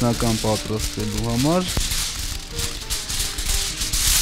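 A man's voice in short phrases with rising pitch for the first second and a half, then a steady hissing rattle that grows louder near the end.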